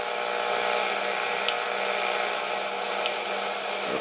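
Shortwave static hissing steadily from a HamGeek DSP-01 software defined radio's speaker in AM mode at 14 MHz, with no station tuned in. A low steady hum runs underneath, and two faint ticks come about a second and a half apart.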